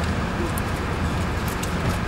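Steady low rumble of a vehicle heard inside its cabin, with faint voices in the background.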